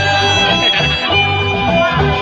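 Live band music played over a stage sound system: guitars over a bass line whose notes come in a steady rhythm.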